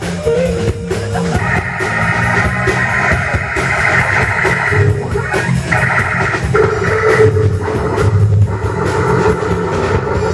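Live rock band playing an instrumental passage: electric guitar, bass guitar and keyboards over a steady drum-kit beat, with long chords held in stretches through it.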